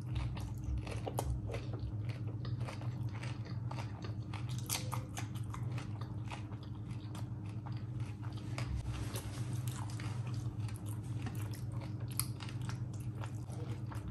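Close-miked chewing of a mouthful of rice and curry eaten by hand, with many small wet clicks and smacks.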